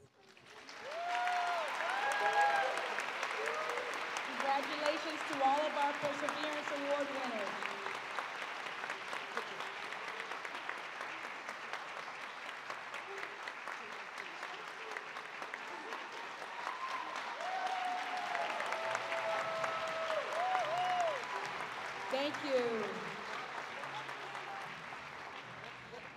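Sustained applause from an auditorium audience, starting about half a second in, with voices calling and cheering over it at the start and again near the end.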